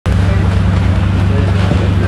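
A loud, steady low hum with faint voices over it.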